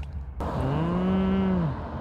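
A single long, low call that rises in pitch, holds, then falls away, lasting about a second and a quarter.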